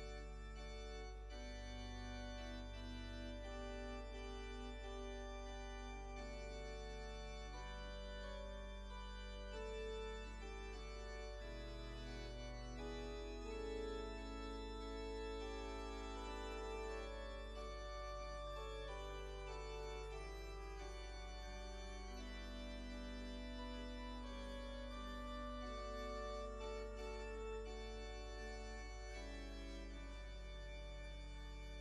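Organ playing the announced hymn in long held chords that change every second or two, with no voices singing yet: the introduction before the congregation sings. A steady low hum runs underneath.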